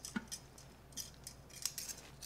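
Metal kitchen tongs clicking and tapping lightly as they press seasonings onto raw chicken thighs. There are a handful of faint, separate ticks spread through the two seconds.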